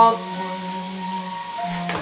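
Bacon, onions, peppers and green beans sizzling steadily in a cast-iron skillet.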